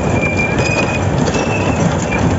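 Roller coaster train running along its track: a steady loud rattle and rumble of the wheels and cars, with thin high squeals now and then.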